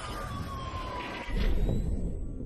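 Cinematic outro sound effect: a slowly falling tone over a rushing hiss, then a deep boom a little past one second in that rumbles on.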